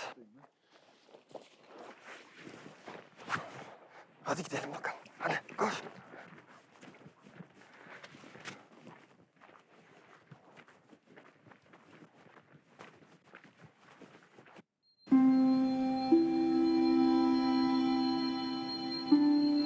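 A dog and a person moving about on dry forest ground: scattered footsteps and rustling, with a few short louder sounds in the first few seconds. About 15 s in this cuts off, and music with long held notes begins.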